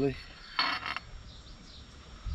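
A brief scraping slide of a Kawasaki Z1000SX fork's damper rod assembly, metal on metal, about half a second in, as it is drawn out of the fork tube.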